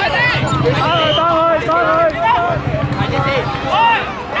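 Young children's voices calling and chattering, several at once and high-pitched, with adult voices around them.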